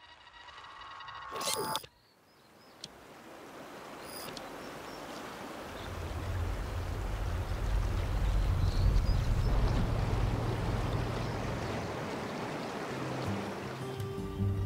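A short logo jingle of held tones swells and cuts off abruptly about two seconds in. Then the rush of a fast-flowing creek fades in and grows louder, with a deep rumble underneath from about six seconds on.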